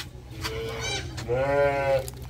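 Neimi sheep bleating: a short bleat about half a second in, then a longer, drawn-out one near the end.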